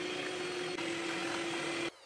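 Campomatic electric hand mixer running steadily at a constant pitch, its beaters whipping eggs and powdered sugar into a fluffy batter; it switches off just before the end.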